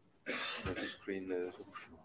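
A man clearing his throat: a rough, raspy burst, then a couple of short voiced hums.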